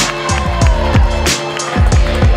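Electronic background music with a heavy, steady bass beat and a synth tone sliding downward in pitch.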